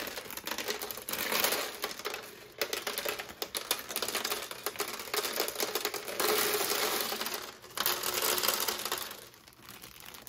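Many small plastic LEGO round pieces clattering out of a zip-lock bag onto a tiled LEGO floor, in several bursts of dense rattling as the bag is shaken, with the plastic bag crinkling.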